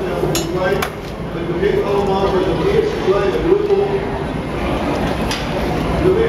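A few sharp metallic clinks of glassblowing hand tools against the blowpipe and steel bench, two in the first second and another near the end, over people talking in the background.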